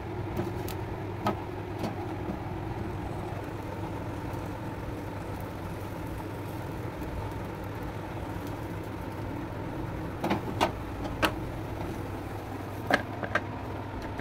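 Gas stove burner running steadily with an even hum and rush of flame under a wire roasting grill. A few light clicks come about ten seconds in and again near the end.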